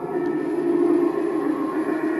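A steady, low droning sound effect played through the speaker of a Tekky Design Fogging Grim Reaper Halloween animatronic during its demo, swelling slightly about half a second in.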